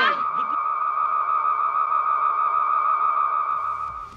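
Film soundtrack: a single steady high tone with fainter overtones, held for about four seconds and fading near the end.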